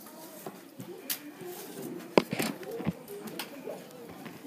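A few sharp taps and knocks of a pencil and plastic protractor on paper on a tabletop, the loudest about two seconds in, over faint voices in the background.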